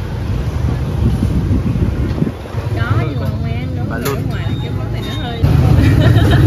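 Street traffic: a steady low rumble of passing vehicles, louder about five and a half seconds in, with people talking in the background.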